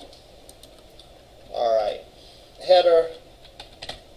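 Computer keyboard typing: scattered key clicks. Two brief bursts of a voice, about a second and a half and nearly three seconds in, are the loudest sounds.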